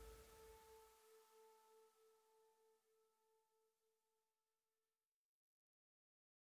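Faint fading tail of the last track in a hardstyle DJ mix: a held electronic tone with a few overtones, its lowest note pulsing gently, dying away into silence about five seconds in.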